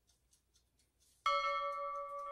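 A notification-bell chime sound effect: a sudden bright ding with several ringing tones, starting just over a second in and holding steady. Before it, faint quick ticking of salt grains falling into the water.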